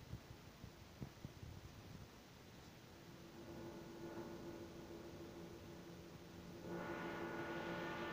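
Cabin noise inside a moving city bus: a low rumble with a few knocks over the first second or so, then a steady hum that grows louder, with a fuller, louder steady drone over the last second or so.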